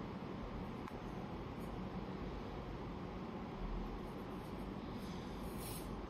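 Steady low room noise, a hiss with a low rumble, and no bowl ringing. Near the end a short scuffing rustle as hands turn the metal singing bowl.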